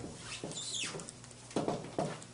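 Dry-erase marker squeaking and scratching on a whiteboard as letters are written, in short strokes, with one high squeak that falls in pitch about half a second in.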